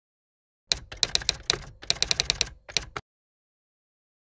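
Typewriter keystrokes, a quick run of about eighteen sharp clacks over a little more than two seconds with a brief break in the middle, stopping about three seconds in.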